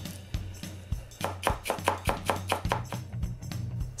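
Damascus chef's knife thinly slicing the white part of a green onion on a wooden cutting board: a quick, even run of knife strikes on the board, about five a second, starting about a second in, over background music.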